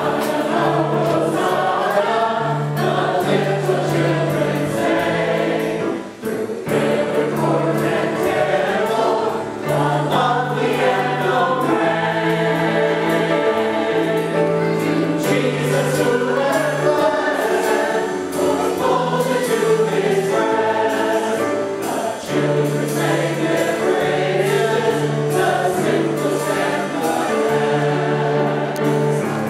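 Church choir singing a hymn with instrumental accompaniment, over sustained low notes that change every second or two.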